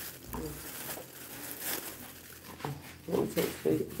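Quiet stretch with faint rustling of small plastic bags of dried fish being handled, then soft talking from about three seconds in.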